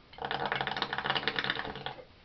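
Water bubbling in a small glass bong as smoke is drawn through it: a fast, even rattle of bubbles with a low gurgling pitch, stopping just before the end.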